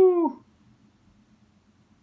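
A person's voice imitating an owl's hoot: the tail of one long held "whoooo", slowly falling in pitch and ending shortly after the start.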